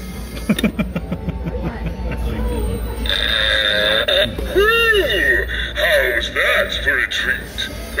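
Animated skeleton-in-a-barrel Halloween prop playing its recorded joke voice and a buzzing fart sound effect in the first few seconds. Its lid closes over the skeleton and opens again.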